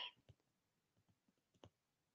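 Near silence: room tone with a few faint clicks, the clearest about one and a half seconds in.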